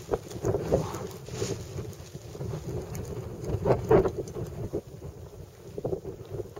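Wind buffeting a phone's microphone in uneven gusts, loudest about four seconds in.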